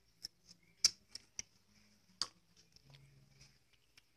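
Sounds of eating and handling green apricots: a handful of sharp, crisp clicks and crunches, the loudest about a second in and another a little after two seconds, from biting the hard unripe fruit and reaching into a plastic basket.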